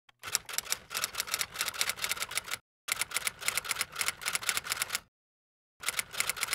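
Typewriter keys striking in quick runs of sharp clacks, three runs broken by short silent pauses, one about two and a half seconds in and one about five seconds in.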